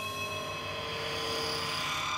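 Closing-card sound effect: a swelling whoosh over held electronic tones, growing gradually louder.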